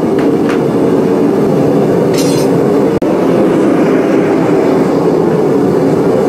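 A blacksmith's forge running with a loud, steady rushing noise while the work heats to welding heat, with one brief sharp sound about two seconds in.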